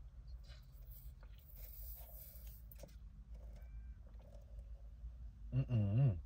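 Faint sipping of a smoothie through a plastic straw over a steady low hum inside a car cabin, with a short hummed voice sound near the end.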